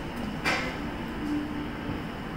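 One sharp click about half a second in, wooden chopsticks tapping a ceramic plate, over a steady low background hum.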